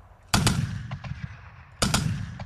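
Gunfire on a military field exercise: a loud shot about a third of a second in and another about a second and a half later, with a couple of fainter shots between. Each shot leaves a long rolling echo.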